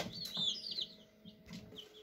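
Chicks peeping: many quick, high, falling cheeps, thick in the first second and sparser after.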